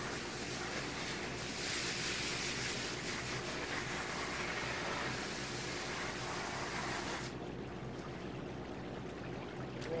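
Garden hose spraying water onto a dog in a plastic pool, a steady hiss that stops abruptly about seven seconds in.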